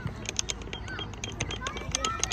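Children's voices calling out in short high shouts, with a run of short, sharp clicks.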